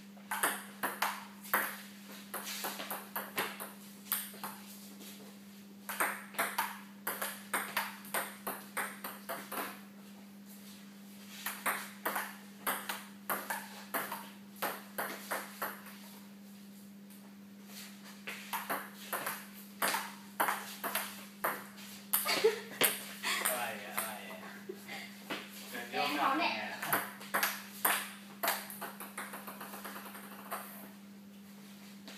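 A table tennis ball clicking off the paddles and table in quick rallies, about five bursts of rapid clicks separated by short pauses, over a steady low hum.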